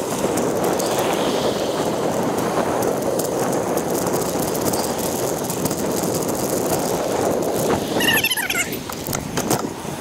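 Knobby bicycle tyre rolling over grass and a dirt path, with the bike rattling and wind on the microphone in a steady rush. The noise eases about eight seconds in, and a few brief high squeaks come through.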